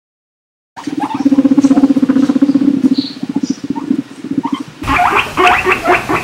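Guinea pig calling: a low, rapidly pulsing rumble for about four seconds, then near the end a quick run of short high squeaks.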